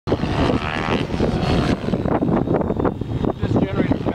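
Align T-Rex 700E electric RC helicopter flying: rotor and motor sound, with a high whine in the first second or so, heavily buffeted by wind on the microphone.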